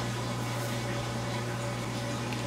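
Steady low hum with a faint even hiss behind it: background room noise with no distinct event.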